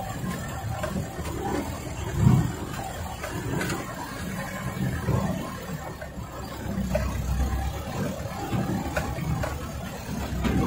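Dump truck's engine running inside the cab as it drives slowly over a rough dirt track, with scattered knocks from the cab and load bed and one louder bump about two seconds in.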